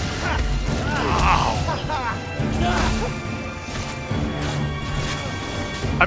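Film soundtrack of a wizard duel: crashing spell-impact sound effects over a dramatic music score.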